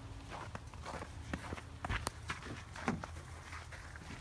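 Footsteps walking over snow-covered ground, an uneven run of steps a few tenths of a second apart, over a low steady rumble.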